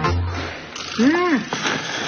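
Noodles being slurped in noisy draws over background music, with a short tone that rises and falls back about a second in.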